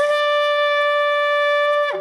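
A long spiral horn, a Yemenite-style shofar, blown in one long steady note that drops in pitch and breaks off near the end.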